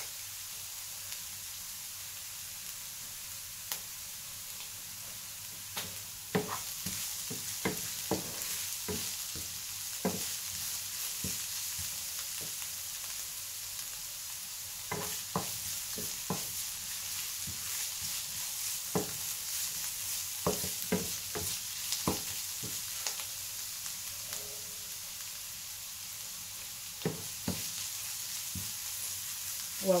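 Diced beetroot sizzling steadily in a frying pan, with a wooden spoon knocking and scraping against the pan in spells of stirring from about six seconds in.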